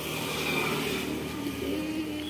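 A passing motor vehicle's engine hum that steps up in pitch about halfway through, with street noise behind it.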